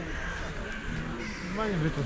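A crow cawing, with people's voices in the background.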